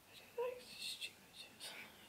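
Faint whispering in short breathy bursts, with a short blip about half a second in.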